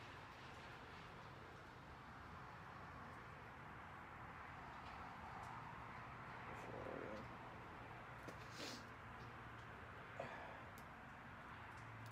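Faint steady background hiss with a few soft clicks and scrapes, from a tubing cutter being tightened and turned around a metal hard line to cut it.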